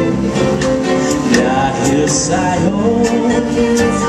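Live soul band and symphony orchestra playing a jazzed-up arrangement of a slow Filipino love ballad, with drums keeping time under the melody.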